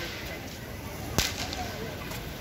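A single sharp firecracker bang about a second in, standing out over the steady background of the street.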